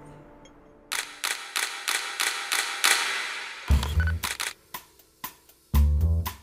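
Digital SLR camera shutter firing in a rapid run of sharp clicks, about four a second, starting about a second in. About two-thirds of the way through, a band-music cue with bass and drums comes in over it.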